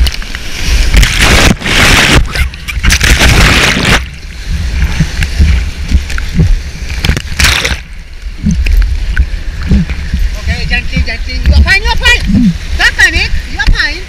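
Whitewater rapid breaking over a kayak and its helmet camera: loud rushing, splashing surges of water for the first few seconds and again briefly about halfway through, over a low steady roar of the river. Shouting voices come over the water near the end.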